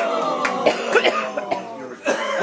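A man's long, theatrical death groan sliding down in pitch and trailing off, broken by a few short coughs and splutters.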